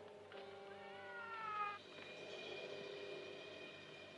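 Cat yowling once in a film trailer soundtrack: a single long, faint wail that bends up and then falls in pitch, and cuts off sharply just under two seconds in. A faint steady held tone follows.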